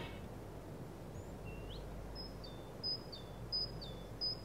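A bird calling with short, high two-part chirps, one about every 0.7 seconds from a little past halfway, after a single rising note, over a faint steady background hiss.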